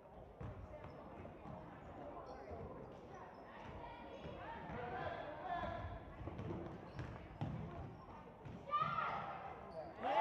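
A basketball being dribbled on a hardwood gym floor during a game, the bounces echoing in the large hall, under voices of players and spectators.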